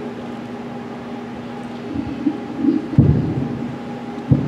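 Quiet room tone with a faint steady hum, then low thumps and rumbles from about two seconds in, the sharpest near three seconds, typical of a table microphone being bumped and handled.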